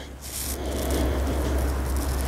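A long, steady inhale through the nose as a glass of beer is held up to the face and its aroma is smelled. The breath builds over the first half second and then holds, with a low rumble of breath reaching the microphone.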